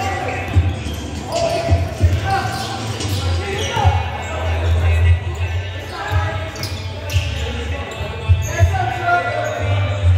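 A basketball game in a large gym: the ball bouncing on the court floor in irregular thuds, sneakers squeaking, and players and spectators calling out, all with the echo of the hall.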